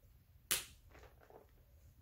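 A single sharp plastic snap about half a second in: the lid of a small cat-treat tub being popped open. A few faint handling sounds follow.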